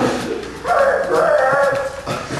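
A man's wordless vocal imitation of an animal: one pitched call, held for about a second, starting just over half a second in.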